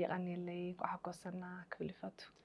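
Only speech: a woman talking, in two short stretches with a brief pause between.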